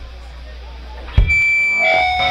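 Amplifier hum under faint room noise, then about a second in a thump, and an electric guitar starts ringing through its amplifier in steady held tones, growing fuller near the end.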